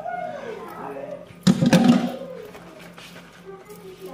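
A woman's voice making playful sounds that slide up and down in pitch without clear words, with a louder outburst about a second and a half in, over a faint steady low hum.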